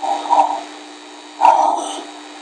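Two short, loud, wordless vocal sounds from a person, each about half a second long, the second coming about a second and a half after the first.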